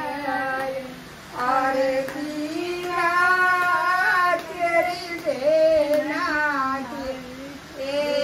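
A high voice singing a slow melody in long held notes, with a short pause about a second in.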